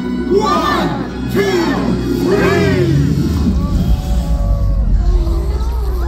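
A crowd of voices shouting a count together, three calls about a second apart, over background music, followed by scattered voices.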